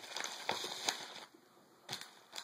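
Crinkling and rustling of a small plastic sample packet being handled, with a few light clicks, for a little over a second, then a single tap near the end.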